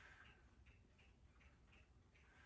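Near silence with faint, even ticking, a little under three ticks a second, and a soft breath-like hiss at the very start.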